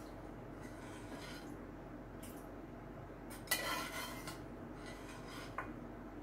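Kitchen utensil clinking against dishware while soup is served: one sharp clink with a brief ring about halfway through, a lighter tap before it and a small click near the end, over a steady low hum.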